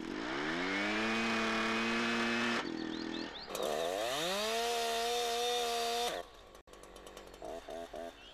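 Husqvarna two-stroke chainsaw revving up to full throttle and holding there, with a brief dip before it climbs again. The engine sound cuts off sharply about six seconds in.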